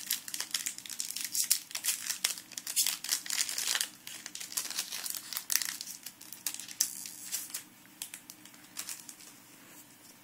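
Foil wrapper of a trading-card booster pack crinkling as it is handled and torn open, a dense crackling that thins out and goes quieter over the last couple of seconds.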